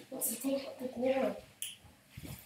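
Indistinct child's voice, with a single sharp click about one and a half seconds in.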